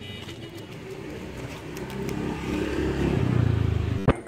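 A motor vehicle engine running and growing steadily louder over the second half as it approaches.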